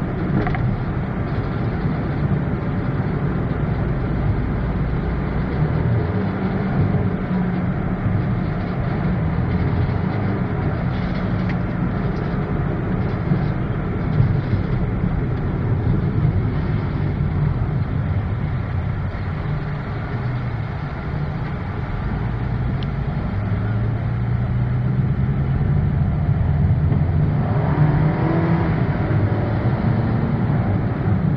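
Car engine and road noise heard from inside the moving car's cabin: a steady low rumble whose engine note shifts up and down in pitch as the car speeds up and slows in traffic.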